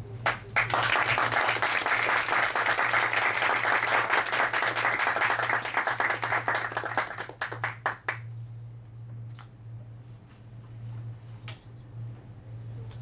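Audience applauding, a dense patter of many hands that dies away after about eight seconds, leaving a few scattered claps.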